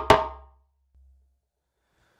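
Djembe played with bare hands: the final slap of a four-tone, three-slap phrase lands just after the start and rings out within about half a second.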